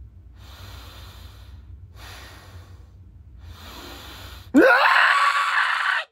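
A man breathing heavily and anxiously, three long audible breaths, then a sudden loud yell of celebration that swoops up in pitch and holds for about a second and a half.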